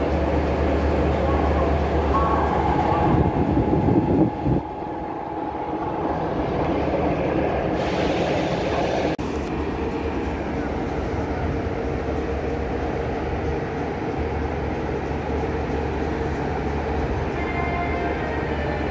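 Railway locomotive running at a station, giving a steady low hum. A louder rush of noise about three to four seconds in drops away suddenly.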